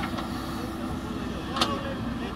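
JCB backhoe loader's diesel engine running steadily while the backhoe works the soil, with a single sharp knock about one and a half seconds in.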